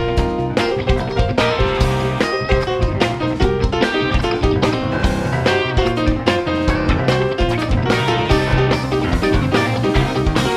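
Live band playing: electric guitars, bass guitar, keyboards and drums, over a steady drum beat.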